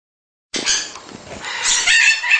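Baby macaws making harsh, raspy squawks and chatter, starting suddenly about half a second in.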